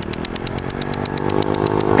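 A motor vehicle engine running at a steady, unchanging pitch, with a rapid, even high ticking of about ten a second over it.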